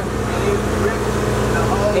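Portable generator engine running steadily at a constant speed, an even low hum that does not change.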